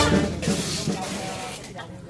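A lull in the brass band's music: the last note breaks off at the very start and fades, leaving faint voices of people talking over a low background hiss.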